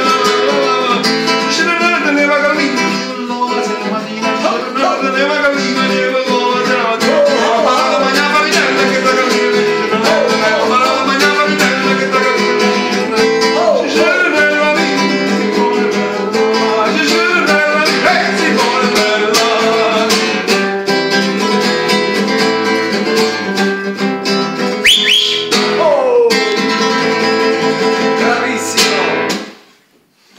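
A man singing to his own strummed acoustic guitar, stopping abruptly just before the end.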